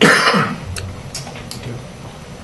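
A person coughs once: a loud, short burst at the very start, followed by a brief spoken "okay".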